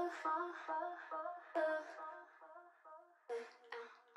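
Isolated vocal delay effect on a female sung hook: short sung notes repeat about two and a half times a second and fade away. A second phrase starts its own fading echoes a little past three seconds in. Quiet.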